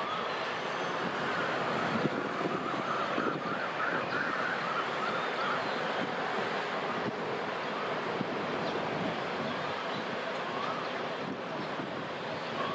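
Steady, even outdoor rumble and hiss of a rail yard, with a distant diesel-electric locomotive moving slowly. Faint wavering high tones come and go over it, about a second in and again near the end.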